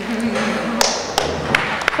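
Indistinct murmur of voices in a large hall, with a few sharp taps or knocks spread through it.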